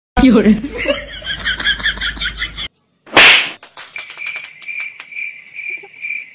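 A loud slap lands about three seconds in, the loudest sound here. Before it come a couple of seconds of a warbling, wavering comic sound effect, and after it a steady high pulsing tone that runs on past the end.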